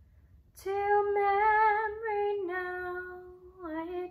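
A woman singing a slow traditional song unaccompanied. After a short breath pause she holds a long steady note, then steps down to a lower held note and slides briefly lower again near the end.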